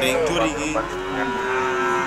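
Cattle mooing at a livestock market, with one long, even-pitched low call through the second half, over the mixed voices of people nearby.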